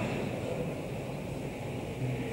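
Steady hiss and low hum of a large mosque's open sound system and broadcast, with no voice: the silent pause after the opening takbir of the prayer.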